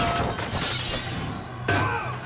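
A heavy crash as a body smashes onto a table of dishes, with shattering and clattering debris, then a second sharp impact near the end, over film score music.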